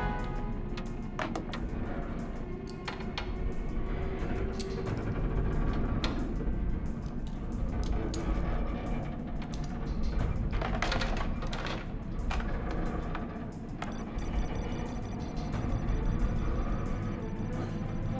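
Tense film score music over a low drone, with scattered short clicks and knocks. A high, thin, steady tone joins near the end.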